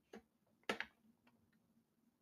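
A few faint computer keyboard keystrokes, sharp short clicks bunched in the first second, as a ticker symbol is typed into a search box.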